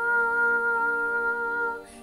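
A steady musical drone of several held tones that does not waver, cutting off abruptly near the end.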